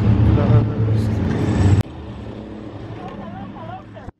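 A steady low rumble of outdoor ambience with a faint voice in it, cut off suddenly about two seconds in. After the cut comes much quieter indoor shop ambience with faint distant voices.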